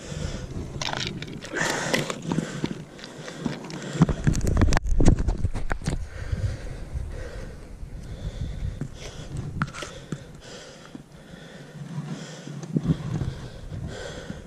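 Close handling noise at an ice-fishing hole: rustling clothing, scraping and crunching on snow and ice, and a few sniffs and breaths. About four to six seconds in there is a heavier rumbling burst of noise against the microphone, with a sharp knock in it.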